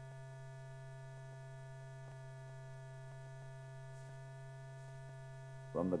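Steady electrical hum with several fixed overtones, the background noise of an old film soundtrack, with a few faint ticks.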